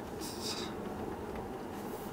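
Steady tyre and road noise heard inside the cabin of a Tesla Model S electric car rolling at about 36 km/h, with a short soft hiss about half a second in.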